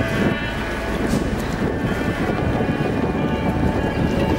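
Wind buffeting the microphone over water on a river, a dense, uneven rumble with faint steady tones of background music underneath.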